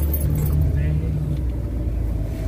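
Steady low drone of a car driving, heard from inside the cabin: engine and road noise.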